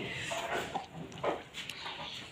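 A few short, faint animal calls over low background noise, one about half a second in and another about a second later.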